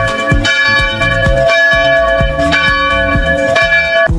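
A bell sound effect ringing on with many steady tones, as part of a news-channel jingle over a steady music beat; the ringing cuts off suddenly at the end.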